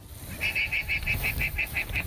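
Guanaco calling: a rapid, shrill trill of short repeated notes, about eight a second, lasting about a second and a half, over a low wind rumble.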